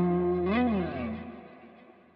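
Fender Telecaster through a Line 6 Helix holding a last note, bent up and back down about half a second in, then fading away.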